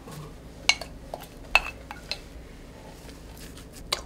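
Kitchenware clinking: a glass seasoning bowl and utensils knocking against a stainless steel mixing bowl, in a handful of sharp, irregular clinks, the strongest about a second and a half in.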